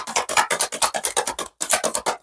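A deck of tarot cards shuffled by hand: a quick run of crisp card flicks and slides, with a short break about three quarters of the way through before the flicking picks up again.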